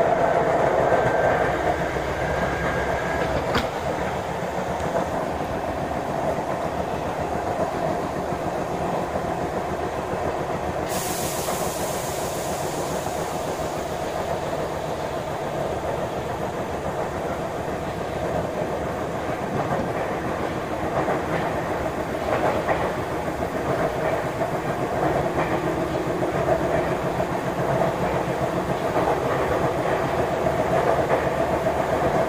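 Sotetsu 7000 series electric commuter train (set 7710F) running, heard from inside the car: a steady rolling and running noise with wheels clattering over rail joints. A hiss comes in about eleven seconds in and fades over a few seconds.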